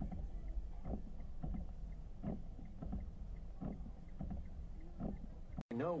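Cabin sound of a car idling on a wet road in the rain: a steady low rumble with a short swish or knock every half second to a second, typical of windshield wiper strokes through water. The sound cuts off suddenly near the end.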